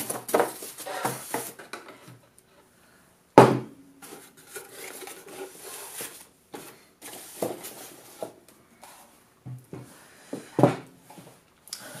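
Handling noise from unboxing a metal rack-mount video monitor: the panel and its white packaging insert knocking and scraping on a table, with one loud knock about three and a half seconds in and lighter knocks and rubbing after.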